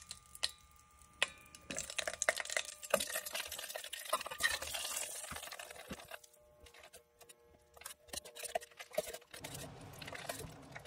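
Lumps of mutton tallow being dropped into hot melting beeswax in a stainless steel pot and stirred with a metal spoon. Scattered small clicks and knocks of the spoon on the pot, a liquid stirring sound, and a stretch of soft hiss a few seconds in.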